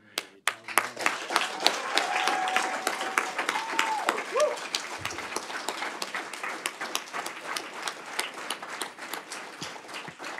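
Audience applauding in a meeting room, starting about half a second in and thinning a little toward the end.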